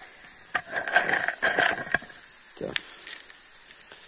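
A tight-fitting lid on a tin of air-rifle pellets being twisted and worked open: scraping and squeaking for about a second and a half, then a single sharp click.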